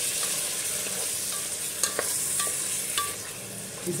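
Beef, yogurt and spices sizzling steadily in hot oil in a metal pot as a spoon stirs them to fry the masala, with a few sharp clicks of the spoon against the pot in the second half.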